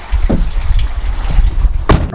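An SUV's rear liftgate being pulled down and slammed shut, one sharp thud near the end, heard from inside the cargo area over a steady low rumble.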